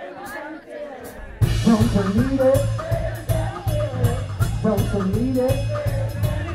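Live blues-rock band: about a second and a half of quieter singing over light cymbal ticks, then the full band comes back in with drums, electric guitar and a steady beat, with singing over it.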